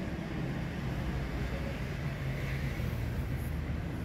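A steady low mechanical hum, as of a motor or engine running.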